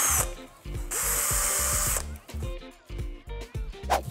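Cordless drill spinning a wooden dowel in drilled holes in Styrodur foam board, smoothing and rounding them out. One run ends just after the start. A second run of about a second follows, its motor winding up and then down.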